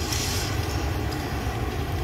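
Steady low rumble of background noise, with a short hiss at the very start.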